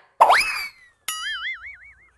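Two comic cartoon sound effects. First, a quick whistle-like tone sweeps sharply upward and then slides slowly back down. About a second in, a boing tone wobbles up and down several times before it fades.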